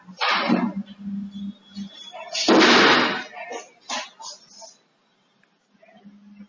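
Choppy, garbled voice-call audio breaking up over a very slow internet connection: broken fragments of sound with two loud bursts of noise, the louder one about two and a half seconds in, then a dropout to silence near the end.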